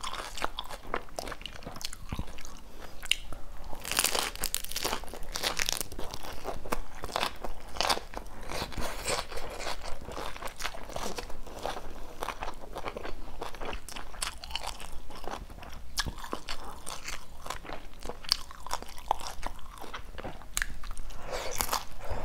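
Close chewing and crunching of crispy fried Vietnamese spring rolls (chả giò) in rice-paper wrappers, rolled in lettuce and herbs: a steady run of small crisp crackles, with louder crunching about four seconds in. The wrappers were fried twice to make them crisp.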